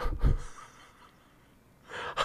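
A man's short, loud breath into a close microphone in the first half-second, then quiet until his speech starts again near the end.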